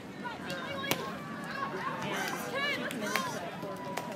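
Beach volleyball struck by hands during a rally: two sharp slaps, about a second in and again about two seconds later, with players' calls and voices around them.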